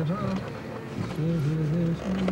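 A voice making wordless, wavering held tones, like humming, in two or three stretches of about a second each, inside a car cabin.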